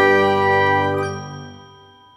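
A bell-like chord of several steady tones from an intro jingle, ringing on and then fading away to almost nothing in the second half.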